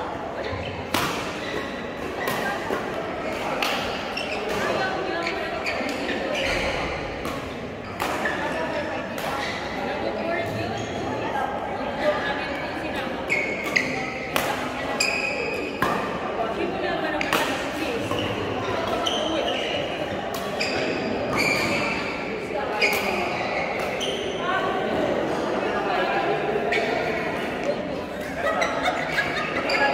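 Badminton rackets striking a shuttlecock in a doubles rally: sharp smacks at irregular intervals, roughly one every second or two, echoing in a large sports hall over background voices.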